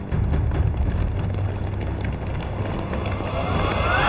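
Film-soundtrack sound design: a low, steady rumble with a rising whoosh that swells over the last second to its loudest point at the end.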